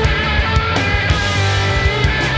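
Garage rock music: a guitar-led band passage with bass and drums hitting in a steady beat, no voice heard.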